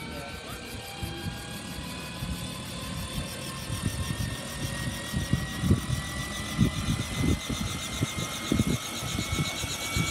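Battery-powered Robinson R44 helicopter's electric drive running on the ground. A steady electric whine rises slowly in pitch as the rotor spins up, with a fast, even rotor chop and irregular low thumps that grow from the middle on.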